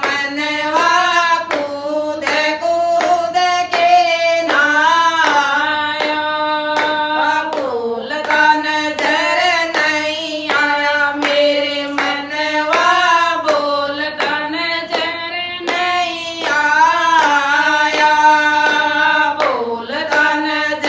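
Several women singing a Haryanvi devotional bhajan in unison, keeping time with steady hand-clapping at about two claps a second.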